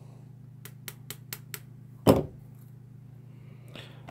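Light tapping on a slot car's guide flag to drive a braid clip down flush: about six quick small ticks, then one harder knock about two seconds in.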